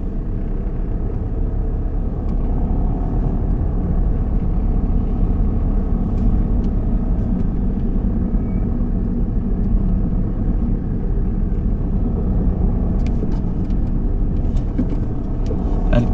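A car's engine and tyres running in town traffic: a steady low rumble.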